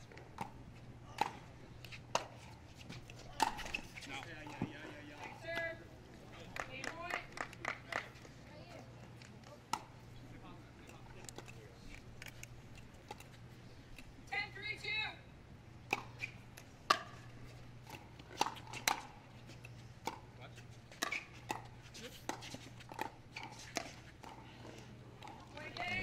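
Pickleball rally: paddles striking the plastic ball in sharp pops at irregular intervals, with brief calls from the players between shots.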